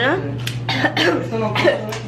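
A woman coughing several times in short, rough bursts, over a steady low hum.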